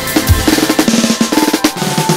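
Electronic rock music with a fast drum fill: a dense run of snare and drum hits over a held synth tone, with the deep bass dropping out soon after the start.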